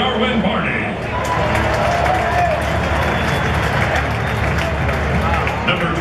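Large stadium crowd applauding and cheering steadily, with a public-address announcer's voice echoing across the ballpark in the first second.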